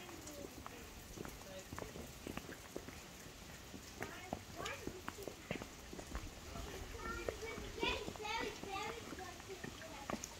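Footsteps on a wet flagstone path: a run of short, light steps, with faint voices behind them.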